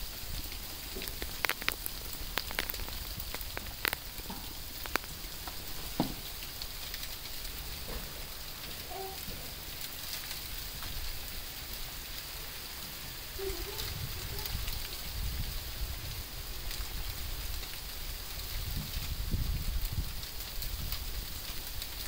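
Wet snow or sleet falling and pattering steadily on leaves and a wooden fence, with a few sharper ticks in the first seconds. A low rumble comes in during the later part.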